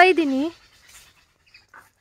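A brief voiced sound from a person, a short utterance lasting about half a second at the start, then quiet outdoor background.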